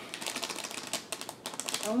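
A small plastic packet crinkling as it is handled and pulled open: a quick, irregular run of crisp clicks and crackles.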